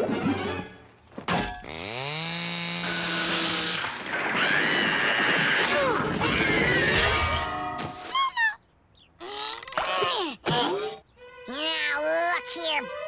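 Cartoon music with slapstick sound effects: a sharp hit about a second in, a falling pitch that settles into a held note, then a long loud stretch of crashing and clatter that ends around the middle, followed by quieter, sparser sounds.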